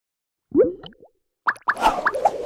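Cartoon pop and plop sound effects for an animated logo intro. There is a single springy plop about half a second in, then a quick run of short rising pops with a swish from about one and a half seconds.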